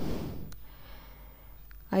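A woman's quick intake of breath between sentences, fading into quiet room tone, with her speech starting again near the end.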